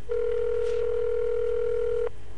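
Telephone ringback tone over a speakerphone: one steady ring lasting about two seconds, then cut off. It is the sign that the dialled call is ringing at the other end.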